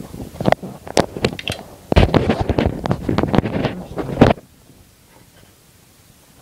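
Objects being handled and clattering right at the microphone: scattered knocks, then a dense run of rattles and bumps from about two seconds in that stops suddenly a little after four seconds.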